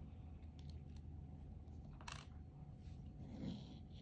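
Faint handling noises from hands moving small objects and a phone on a tabletop: a brief scrape about two seconds in and a soft knock about a second and a half later, over a low steady hum.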